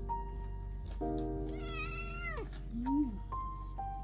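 A domestic cat meows once about halfway in, a drawn-out meow that rises and then falls in pitch, over background music with held notes.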